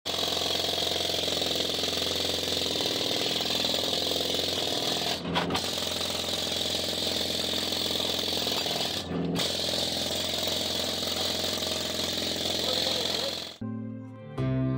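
A pneumatic tool running steadily at a mine face, cutting out briefly twice, about five and nine seconds in. Guitar music starts just before the end.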